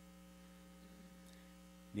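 Faint, steady electrical mains hum: a low drone with several fainter, higher steady tones over it.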